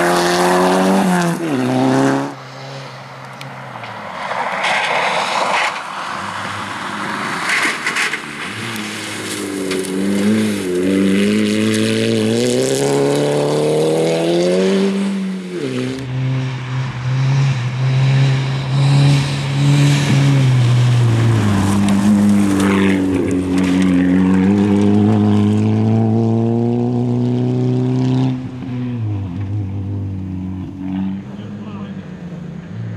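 VW Golf rally car's engine revving hard on a gravel stage, its pitch climbing and dropping back with each gear change, heard in a few separate passes.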